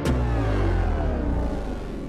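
Produced intro sound effect: a deep rumble that starts abruptly, with a cluster of tones sweeping steadily downward in pitch.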